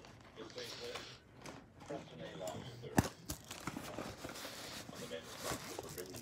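Rustling and small clicks of gear being handled in an EMT bag's back compartment, with one sharp click about three seconds in.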